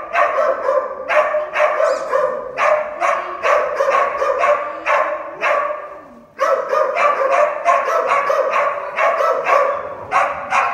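A small dog barking over and over, about two to three high barks a second, with a short pause about six seconds in.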